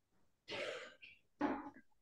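A person clearing their throat twice, softly: two short rasping sounds, the second shorter.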